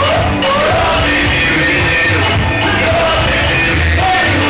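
Loud live music through a PA: a backing track with a repeating heavy bass beat and a voice singing into a microphone over it.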